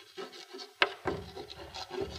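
Chalk scratching on a chalkboard in short strokes as a word is written, with one sharp tap of the chalk on the board a little under a second in.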